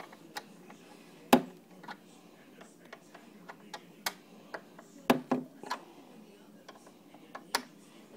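Irregular sharp clicks and taps of a hand screwdriver working the screws in a metal table bracket, the loudest about a second in and another cluster about five seconds in.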